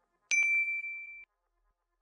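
A notification-bell 'ding' sound effect from a subscribe-button animation: one bright, high ring that holds for about a second and then cuts off suddenly.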